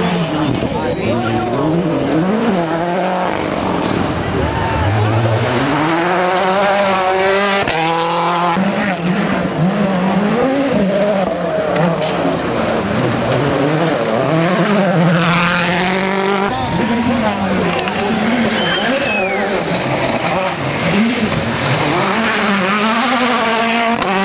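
Ford Fiesta rally cars' turbocharged four-cylinder engines revving hard as they pass one after another, the pitch climbing and dropping sharply through gear changes and lifts, with splashing as a car drives through the water.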